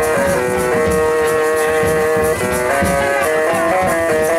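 Music with a melody of held notes over a steady beat.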